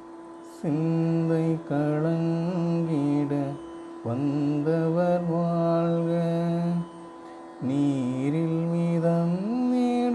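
Music: a voice singing a slow Tamil devotional song in long, held phrases over a steady drone, with short breaks between phrases.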